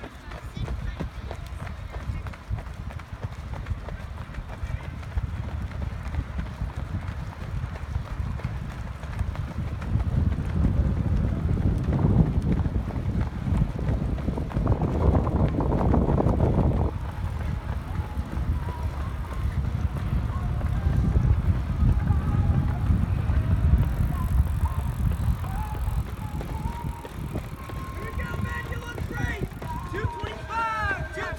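Footfalls of a small pack of runners on a synthetic track, under a low rumble of wind on the microphone that swells in the middle. Faint music and voices sit in the background.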